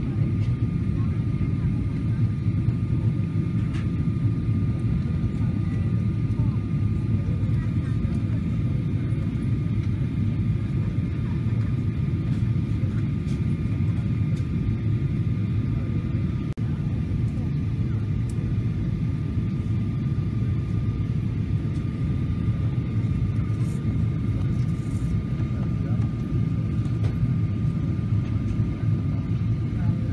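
Airliner cabin noise in flight: a steady low rumble of engines and airflow, with a thin steady whine above it.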